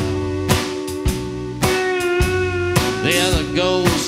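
A live swamp-rock band playing: electric guitars ringing out held and bending notes over a steady drum beat, with a hit about every half second.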